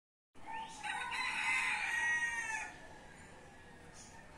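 A single long bird call lasting about two seconds, rising at the start and dropping away at the end, followed by fainter bird sounds.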